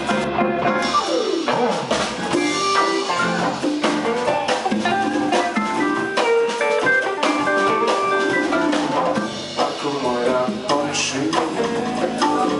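A live jazz band plays an instrumental passage: electric guitars and saxophone carry held melodic notes over a drum kit keeping a steady beat.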